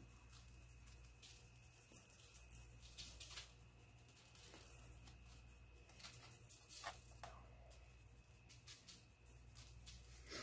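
Near silence, broken by faint spells of soft patter as garlic powder is shaken from a plastic shaker onto buttered bread rolls, over a low steady hum.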